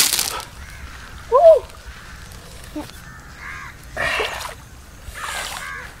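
Shallow river water sloshing and splashing as a person moves out of it onto the bank, with a sharp splash at the very start and a few more splashes later. A few short calls sound in the background.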